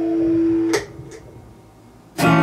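A guitar chord ringing on, then cut off with a sharp click about three-quarters of a second in as the strings are damped, followed by a fainter click.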